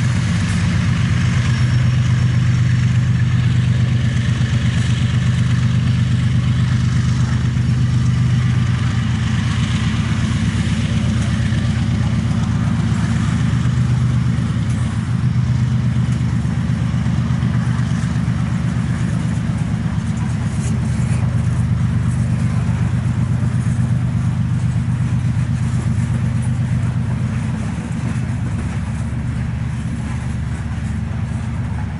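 Freight train cars rolling slowly past as the train gets under way after a stop, a steady low rumble of wheels on rail. It eases slightly near the end.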